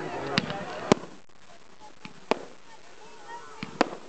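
Fireworks going off: five sharp bangs, the last two close together near the end.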